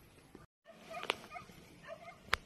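Short high animal calls with a sharp click among them. The sound cuts out completely for a moment about half a second in.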